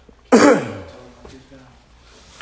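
A man clearing his throat once: a loud, harsh burst about a third of a second in that trails off as his voice falls in pitch.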